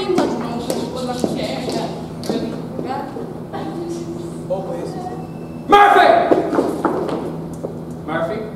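Several stage actors' voices overlapping in a large hall, with taps and thumps of footsteps on the stage floor over a steady low hum. About six seconds in the voices break out suddenly louder, then fade.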